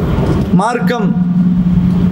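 A steady low hum with a constant pitch, with a brief snatch of a man's voice about half a second in.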